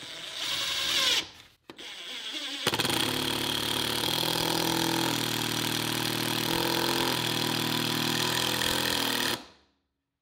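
Makita 18-volt cordless impact driver driving a three-inch screw into a 2x4 at variable speed. There is a short spin-up rising in pitch, a brief pause, then about seven seconds of steady running with the rapid hammering of the impact mechanism, its pitch stepping a few times. It stops abruptly near the end.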